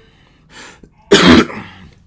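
A man coughing twice: a short, softer cough about half a second in, then a much louder cough about a second in that trails off.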